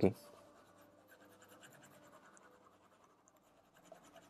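Faint scratching of a stylus on a drawing tablet as the on-screen board is erased, after a brief spoken syllable at the very start.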